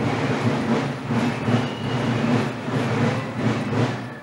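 Marching drums beating a dense, rapid, steady march rhythm.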